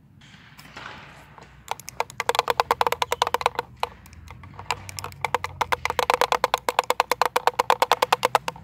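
Small hand drum shaken back and forth, giving fast runs of sharp pitched taps, about nine a second. It starts a little under two seconds in and breaks off briefly near the middle.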